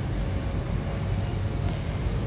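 Steady low rumble of a large airport terminal hall, with no distinct events standing out.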